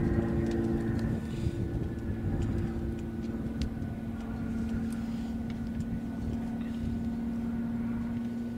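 Piston engine and propeller of an aerobatic aircraft in flight overhead, a steady drone that holds one pitch.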